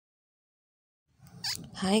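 Silence for about the first second, then a short faint noise and a voice beginning a drawn-out spoken greeting near the end.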